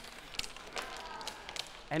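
Quiet lecture-hall room sound with a few short clicks in the first half-second and a faint murmur of voices.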